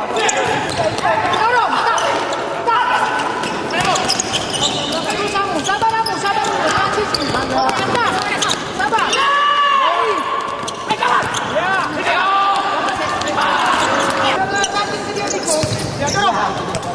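Futsal play on an indoor court: the ball being kicked and bouncing, with many short rising-and-falling squeaks typical of players' shoes on the sports floor.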